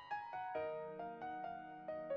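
Background music: a piano playing a gentle melody of single held notes, a new note every quarter to half second.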